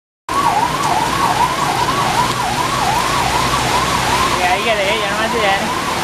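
Police vehicle siren wailing in a fast, steady up-and-down cycle about twice a second, over the steady hiss of heavy rain. Other warbling tones join in about four and a half seconds in.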